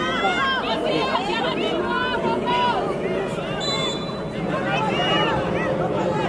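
Overlapping shouts and calls from young players and sideline spectators during a children's football match, many of them high-pitched voices. A brief high steady tone sounds about three and a half seconds in.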